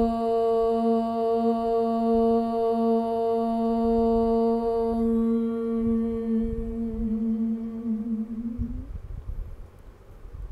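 Voices chanting a long, steady Om on one held pitch, the open vowel closing into a hum about halfway through. The tone wavers briefly and stops near the end.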